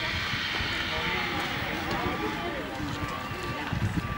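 Indistinct voices of people talking in the background, no words clear, over a low irregular rumble.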